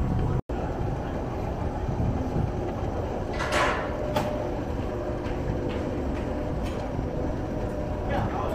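Steady low mechanical rumble of a flight line, with a short rushing swell about three and a half seconds in and a few light clicks after it; the sound cuts out for an instant just after the start.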